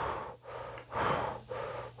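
A man blowing out about four short, airy exhales in a row ('hoo, hoo'), deliberate breaths to calm down and relax.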